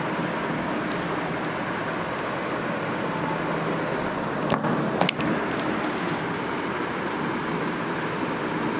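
Steady background noise, a low rumble and hiss like distant road traffic, with two short sharp clicks about four and a half and five seconds in.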